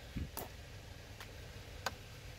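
A few faint, sharp clicks, about three, spaced unevenly with the loudest near the end, after a soft low thump just after the start.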